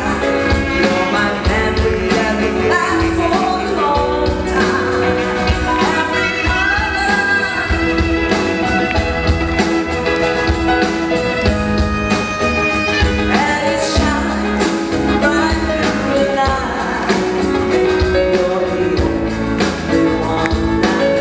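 A woman singing a pop ballad in English live with a band: electric guitar and a steady beat under her voice.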